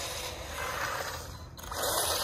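1/12-scale Hailboxing 2997A brushless 4x4 RC truck driving on asphalt toward the microphone: a scraping rush of tyres and drivetrain that grows louder near the end as the truck comes closer.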